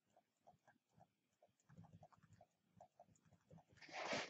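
Near silence with faint, short scratches and ticks of a pen writing words by hand, a few strokes a second.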